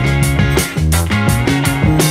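Background rock music with a steady beat.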